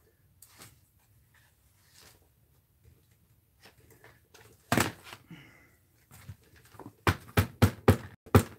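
Small handling clicks, then one sharp knock about five seconds in. Near the end comes a quick, even run of light taps, about five a second: a hand-carved stamp and an Archival ink pad being dabbed together to ink the stamp.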